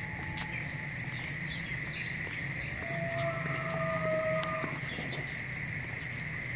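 A farm animal calling once, a long steady call from about three seconds in until near the end, over a steady high drone and scattered light ticks.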